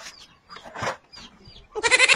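An animal call about three-quarters of a second in, with faint short bird chirps around it. Near the end a sudden, much louder noisy sound begins.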